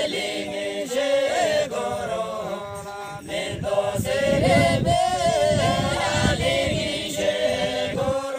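A group of villagers singing a folk song together without instruments, several voices carrying one melody. A few sharp knocks and some low rumbling come in partway through.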